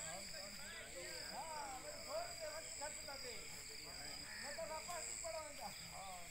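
Rural outdoor ambience: indistinct distant voices and short calls keep overlapping, over a steady high-pitched whine.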